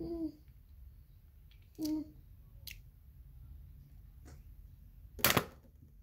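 Two brief vocal sounds from a girl, then a loud sharp knock about five seconds in, with a couple of faint clicks between.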